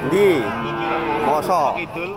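A cow mooing: one long call of about a second and a half whose pitch rises and falls at the start, holds steady, then wavers again near the end.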